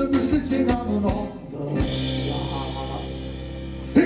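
Live band music: drums and bass playing a steady beat, then from about two seconds in the band holds one sustained chord under a ringing cymbal wash, cut off by a sharp hit at the end.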